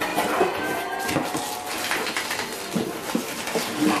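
Corrugated cardboard shipping box being handled and tipped up on a wooden table: repeated scrapes, rustles and knocks of the cardboard.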